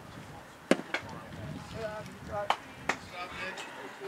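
A pitched baseball smacking into the catcher's mitt: one sharp, loud pop a little under a second in, then a lighter knock just after. Two more sharp knocks come later, amid scattered voices.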